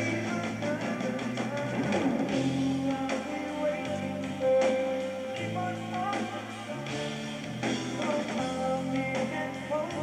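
Live rock band playing: electric guitar with bass guitar and drums, with a note held out about halfway through.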